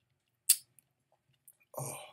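A person tasting with a single sharp lip smack about half a second in, then a faint mouth click, and a voice beginning an "oh" near the end.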